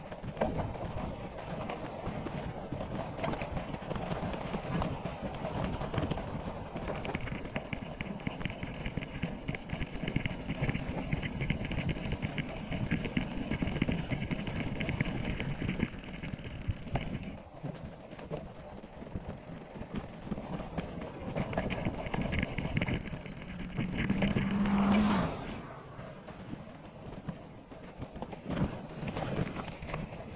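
Mountain bike rolling over dry grass and sandy dirt: knobby tyres crunching and the bike rattling, with wind on the microphone. A fast, high ticking runs in two stretches, one through the middle and a shorter one later. A brief low drone comes a few seconds before the end.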